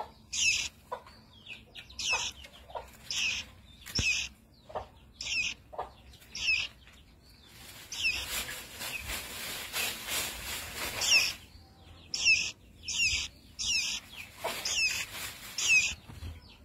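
A caged fledgling songbird giving short, high chirping calls about once a second, each with a quick pitch sweep. Around the middle there are a few seconds of rustling noise.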